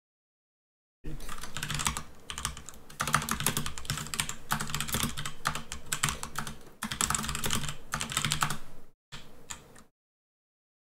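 Fast typing on a computer keyboard, a dense run of key clicks that starts about a second in and breaks off briefly near the end.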